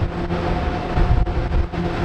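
NASTAR Phoenix human centrifuge spinning: a loud, steady low rumble with a constant hum from its drive.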